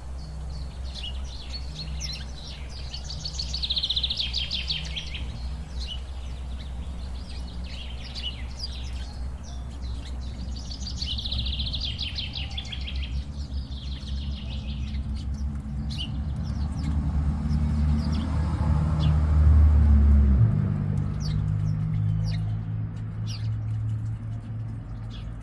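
A songbird singing two rapid trilled phrases, one a few seconds in and another about eleven seconds in, with scattered short chirps. Under it runs a steady low rumble that swells to its loudest about twenty seconds in, then drops away.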